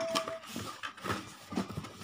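Cardboard box lid and foam-lined packaging tray being handled and fitted back into the box, making scattered light scrapes, taps and rustles.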